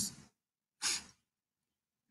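One short exhaled breath, like a sigh, about a second in, heard over a video call. The call audio around it drops to dead silence.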